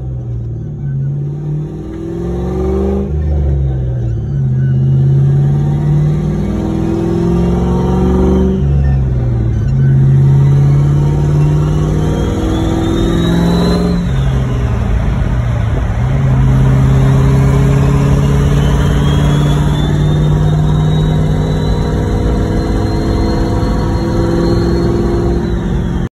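Chevy 4.8 Vortec V8 in a swapped S10 pickup, heard from the cab, pulling hard through the gears of a 5-speed manual. The engine note rises with the revs and drops sharply at each shift, about 3 s, 8 s and 15 s in, with a faint high whine climbing with the revs.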